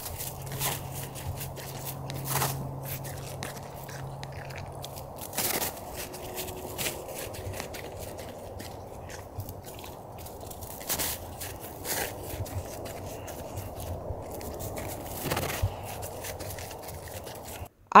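A red heeler (Australian cattle dog) eating snow, biting and crunching at an old snow patch in scattered small crunches and scrapes.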